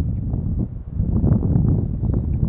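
Wind buffeting the microphone: a loud, uneven low rumble that rises and falls in strength.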